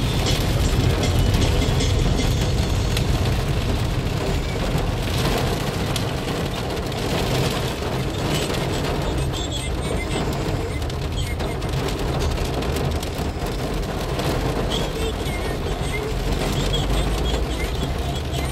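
Heavy rain hitting a car's windscreen and roof, heard from inside the moving car's cabin with steady road noise.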